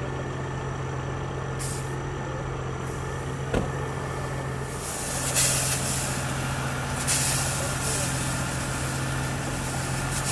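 A fire engine's engine running steadily, and from about halfway through the hiss of a hose spraying water as a diver is rinsed off. A single sharp knock comes a few seconds in.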